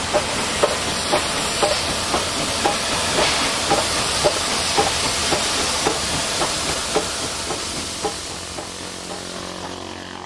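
NSWGR 59 class 2-8-2 steam locomotive 5910 rolling slowly past, steam hissing from around its cylinders and driving wheels, with a regular click about twice a second. The sound fades over the last couple of seconds as the engine moves on.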